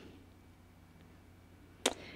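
Near silence: room tone, broken by one short, sharp click near the end.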